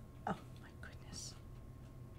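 A woman muttering softly under her breath, with a few faint ticks of cardstock pieces being handled.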